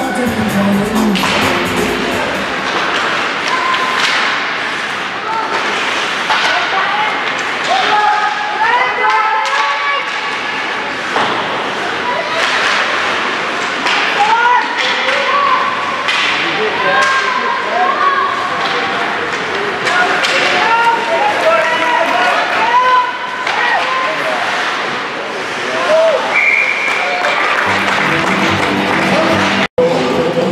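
Ice hockey game sound in a rink: voices calling out on the ice and in the stands, with repeated sharp knocks of sticks and puck throughout. A brief dropout comes just before the end.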